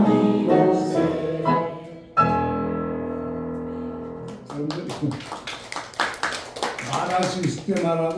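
Group singing with grand piano accompaniment comes to an end. About two seconds in, a final piano chord is struck and rings out, fading, and then voices start talking.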